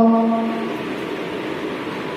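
A voice singing through a handheld microphone holds one note, which ends under a second in. After it comes a steady, noisy wash of room sound in a large echoing hall.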